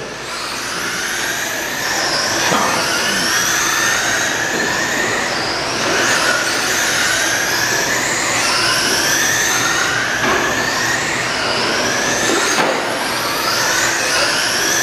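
Several radio-controlled oval race trucks' motors and gearing whining, each whine rising in pitch as a truck accelerates down the straight, one after another every second or two.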